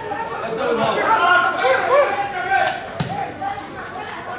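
Voices of players and coaches calling out on a football pitch, with one sharp kick of the ball about three seconds in.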